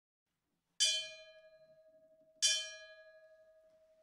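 A bell-like chime struck twice, about a second and a half apart. Each strike rings out and fades, and a steady low ring carries on between them.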